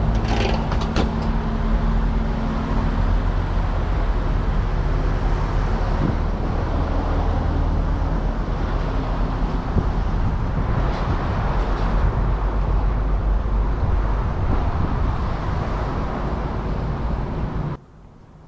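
A car running, with a steady low engine hum and road noise heard from inside the car, and a few short clicks about a second in. The sound cuts off suddenly near the end.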